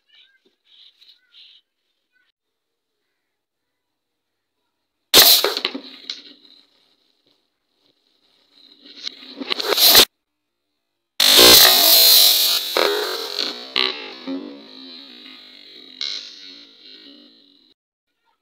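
A plastic bottle filled with acetylene from calcium carbide and water being lit and going off. A sudden burst comes about five seconds in, a second sound builds and cuts off short at about ten seconds, and a third loud burst at about eleven seconds trails off over several seconds with a high steady whistle.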